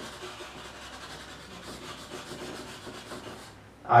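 Coloured chalk rubbed rapidly back and forth on a chalkboard to shade in an area: a faint, steady scratchy scraping made of many quick strokes, stopping about half a second before the end.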